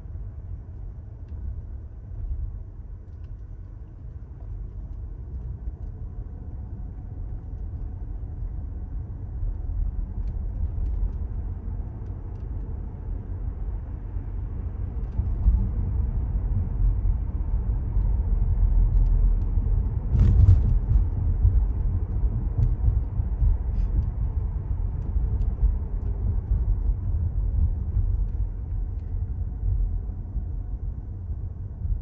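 Low road and tyre rumble inside a Tesla's cabin as the electric car drives, with no engine note. It grows louder about halfway through, and a brief knock comes about two-thirds of the way in.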